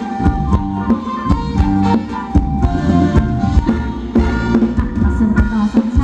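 Live Thai ramwong (circle-dance) band music: a steady drum beat under a sustained, held melody.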